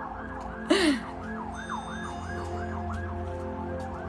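Emergency vehicle siren in the distance, its pitch sweeping rapidly up and down about three times a second, over a steady low hum. A short louder sound cuts in a little before one second in.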